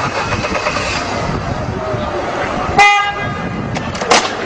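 A car horn gives one short toot, just under three seconds in, over steady street traffic noise.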